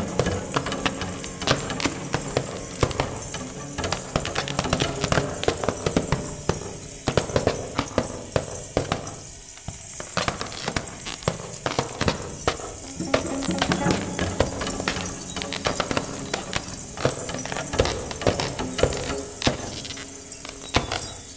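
Transverse flute and percussion playing an experimental piece, with quick, dense percussion strikes throughout. Held low flute notes sound near the start, drop out through the middle, and return a little past halfway.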